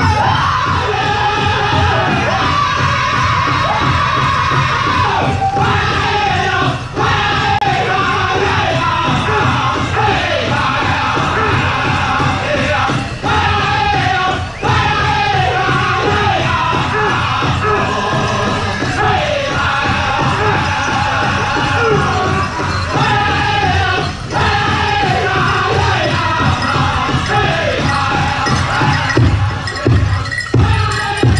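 Powwow drum group singing a chicken dance song in high voices over a steady beat struck in unison on a large drum. The sung phrases fall in pitch again and again.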